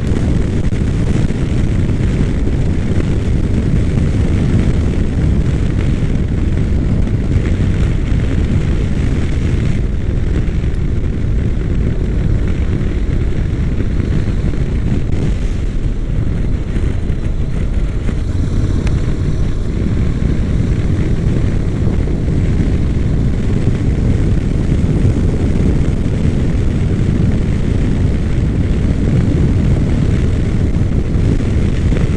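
Honda NC700X motorcycle riding at a steady cruise: the parallel-twin engine's drone blended with a steady low rush of wind and road noise on the microphone, with no gear changes or revving standing out.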